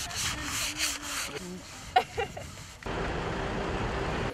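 Sandpaper rubbing on wooden posts, with a faint voice in the background and a single sharp click about two seconds in. Near the three-second mark it cuts to a steady, even roadside noise.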